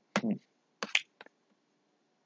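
A short murmured "hmm", then about a second in a few sharp computer mouse clicks in quick succession.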